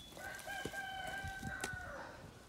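A rooster crowing: one long, level crow that rises briefly at the start and drops away at the end.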